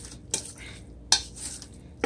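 Hands mixing seasoned raw chicken breast slices in a stainless steel bowl: a soft wet squelching, with two sharp clinks against the metal bowl, one about a third of a second in and a louder one about a second in.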